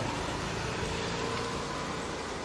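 Steady street noise with a motor vehicle engine running.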